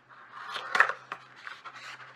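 Scissors cutting through a paper plate: a few snips, the loudest a little under a second in.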